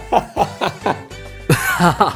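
A person laughing in short, rapid bursts, with a louder, breathy burst near the end, over soft background music.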